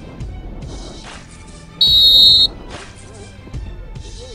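A coach's whistle blown once: a single short, shrill, steady blast about two seconds in, over background music.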